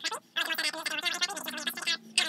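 A man's speech played fast-forwarded: a rapid, garbled chatter of voice, after a short gap near the start.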